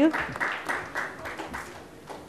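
Audience applauding, the claps thinning and dying away toward the end.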